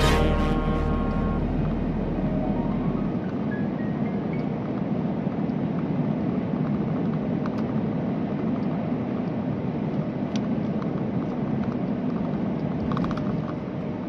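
Background music fades out in the first second or two. It leaves the steady road and engine noise of a vehicle driving through a long road tunnel, heard from inside the vehicle.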